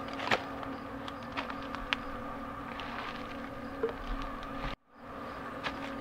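On-demand rain barrel pump running with a steady electric hum, with a few light clicks from the hose being handled. The hum cuts out briefly near the end.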